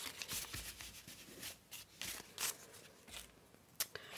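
Crumpled brown parcel packaging paper crinkling and rustling in irregular bursts as it is handled and rolled into a tube, with a sharp click near the end.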